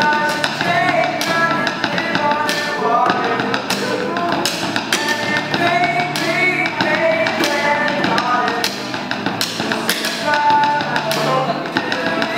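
Drumsticks tapping out a steady beat on a hard flight case, played as a makeshift drum, with an acoustic guitar and several voices singing along.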